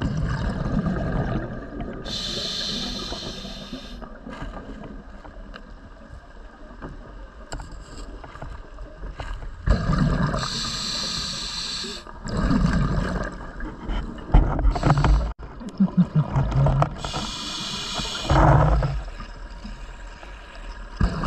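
Scuba diver breathing through a regulator underwater: a hiss on each of three inhalations, with rumbling exhaust bubbles between them.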